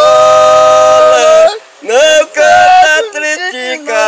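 Men singing a folk song unaccompanied, in a high voice: a long held note for about the first second and a half, a short break, then further sung phrases moving up and down in pitch.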